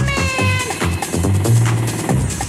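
Mid-1990s house music from a DJ mix: a steady electronic dance beat with a held high note in the first second that slides down as it ends.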